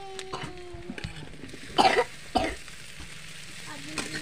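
Diced potatoes going into a hot aluminium kadhai of fried onions, with a few metal spatula knocks on the pan and a light frying sizzle. Two loud coughs come about two seconds in.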